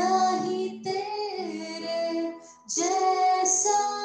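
A woman singing a gospel worship song into a microphone, in two phrases with a short break about two and a half seconds in.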